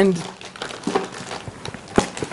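Plastic product packaging crinkling and rustling as it is handled, with a single sharp click just before the end.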